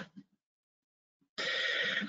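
A man's voice trails off, then there is about a second of dead silence before a steady, breathy intake of breath into a headset microphone, just before he speaks again.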